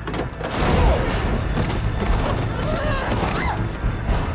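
TV action-scene soundtrack: a dense run of heavy thuds and impacts over music, with voices, starting about half a second in.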